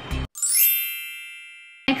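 A bright, sparkling chime sound effect used as an edit transition: a quick upward run of high ringing tones that then ring on together and fade, cut off shortly before the end.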